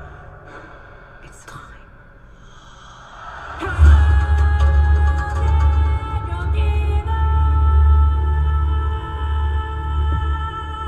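Film trailer music at its finale: subdued for the first few seconds, then a sudden deep bass hit about four seconds in that swells into a loud, sustained low drone under held high tones.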